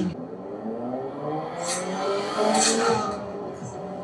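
Drama soundtrack with a vehicle engine whose pitch slowly rises and falls, and two brief hissing swishes near the middle.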